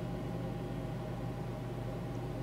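Room tone: a steady low hum with an even hiss underneath.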